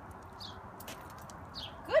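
Quiet outdoor background with a low steady hiss, light faint ticks and a few short, high, falling chirps about a second apart. A voice begins at the very end.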